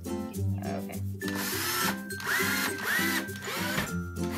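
Red cordless drill driving screws through a flat metal mending plate into a white shelf board. It runs in about four short bursts starting about a second in, and the motor's whine rises and falls with each burst.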